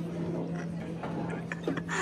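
Dining-room background of a busy restaurant: a steady low hum with a murmur of other diners' voices, which grows a little more voice-like near the end.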